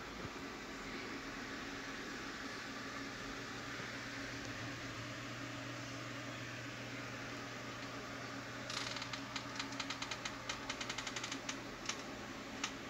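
A steady low hum. In the last few seconds a fast, irregular run of sharp clicks starts up, many a second.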